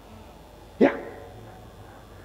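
A single short, loud spoken "yeah" about a second in, against quiet room tone.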